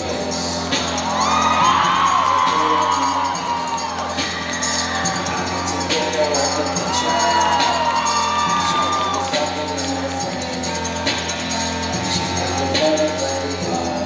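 Pop music playing loudly over a sound system, with a crowd cheering and whooping over it, the cheers swelling about a second in and again around seven seconds.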